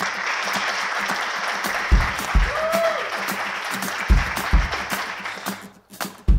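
Audience applauding. Deep, evenly paced drum hits from a music track come in about two seconds in, and the applause stops shortly before the end.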